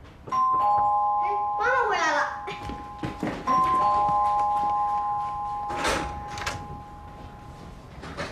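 Electronic ding-dong doorbell chime rung twice, about three seconds apart; the second chime rings out for several seconds. About six seconds in there are two sharp clicks.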